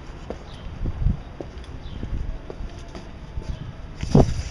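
Footsteps of a person walking, short knocks about two a second over a low background rumble, with one heavier thump about a second in.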